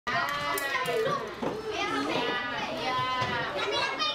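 Classroom of primary-school children talking and calling out together, many high voices overlapping, some with drawn-out vowels.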